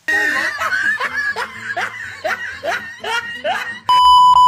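A burst of laughter cutting in suddenly, a string of short rising 'ha' sounds, two to three a second. Right at the end an electronic beep starts.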